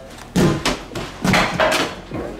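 A mini plastic water bottle hitting an exercise ball and landing on a wooden floor: a sharp knock about half a second in, then a quick run of knocks and thuds near the end as it comes to rest.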